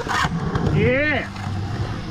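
Skateboard trucks grinding on the concrete coping, stopping just after the start. About a second in comes a single short shout from a person, rising then falling in pitch.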